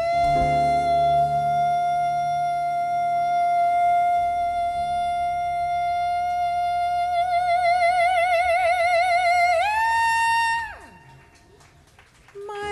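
A female jazz singer holds one long sung note for about nine seconds. It starts dead straight, and a slow vibrato widens over the last few seconds. About nine and a half seconds in she leaps to a higher note, holds it for about a second, then slides down and fades out, over a soft sustained accompaniment.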